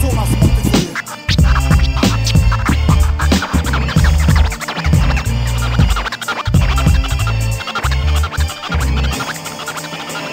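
Hip hop beat with turntable scratching over a heavy bass line. About nine seconds in the bass drops out and the music gets quieter.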